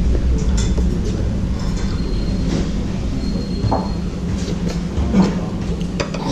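Steady low hum and rumble of room noise, with a few light clinks of a ceramic soup spoon against a bowl.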